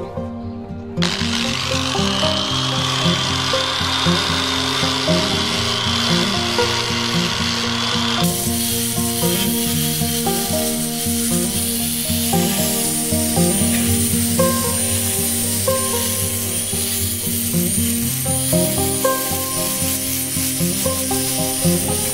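Background music with a steady beat over an electric angle grinder fitted with a sanding pad, sanding a teak wood block. The tool's hiss and high whine start about a second in and grow brighter and fuller about eight seconds in.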